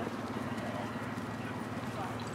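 A horse trotting on a sand dressage arena, its hoofbeats over a steady low hum.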